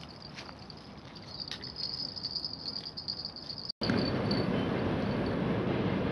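Crickets chirring in a steady high trill over faint riverside background. A little under four seconds in the sound cuts off abruptly, and a louder steady rush of noise takes over, with the insect trill fainter beneath it.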